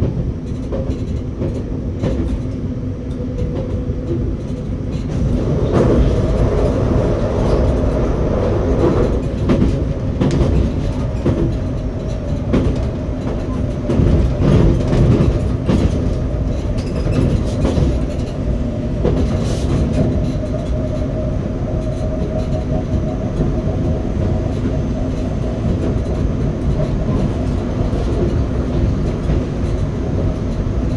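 RER B electric commuter train running at speed, heard from inside the driver's cab: steady rolling noise with a motor hum that gets louder about five seconds in. In the middle, the wheels click over rail joints and a set of points.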